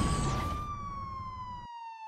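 A sound-effect tone gliding slowly downward in pitch, like a siren winding down, over a fading background that cuts out near the end, leaving the tone alone.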